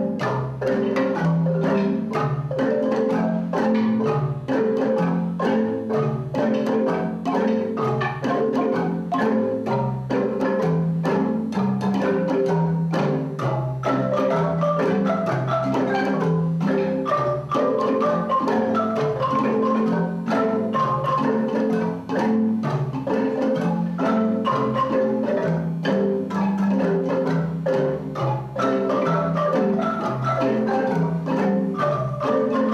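A children's marimba ensemble playing a tune together, many wooden bars struck with mallets in a steady rhythm, with bass marimbas carrying the low notes under the higher parts.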